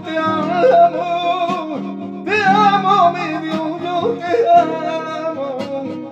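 A man singing long, wavering flamenco-style phrases with no clear words, to his own Spanish guitar accompaniment.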